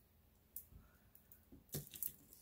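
Near silence with two faint clicks, one about half a second in and a slightly louder one near the end: 8 mm quartz beads on a strand knocking together as they are handled.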